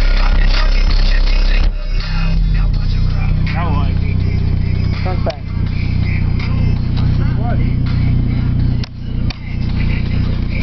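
Bass-heavy music played loud through a Digital Designs DD9512F 12-inch subwoofer driven with about 3,000 watts, its torn surround glued back together. About two seconds in, the deepest bass gives way to a steady, higher bass drone that runs on, with a short drop in level near the end.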